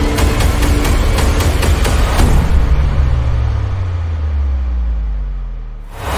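A heavy engine with a falling pitch that winds down and fades over the last few seconds, mixed with a soundtrack. It cuts off just before a loud sudden hit at the end.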